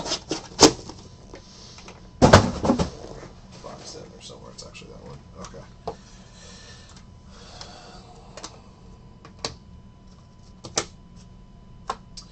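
A cardboard card box and hard plastic card holders being handled on a table: a few clicks and taps, a louder thud about two seconds in, then scattered light plastic clicks as the holders are stacked.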